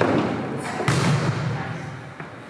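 A volleyball being struck during a rally: a sharp thud just under a second in, ringing on in the echo of a large gym hall.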